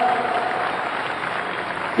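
A large crowd applauding at length: a dense, even clatter of clapping that eases off slowly.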